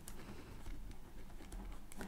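Faint clattering and low rumbling of a garbage bin being dragged, with scattered small ticks.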